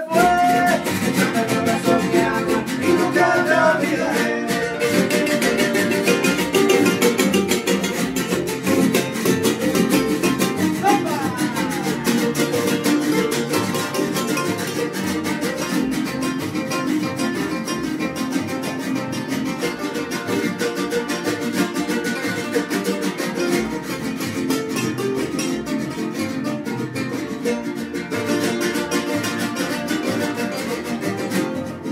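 Son jarocho string band playing an instrumental passage: jaranas strummed in a dense, steady rhythm, a requinto jarocho picking the melody, and a marimbol adding low plucked bass notes.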